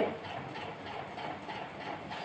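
Steady low background noise with the faint rub of a marker writing on a whiteboard.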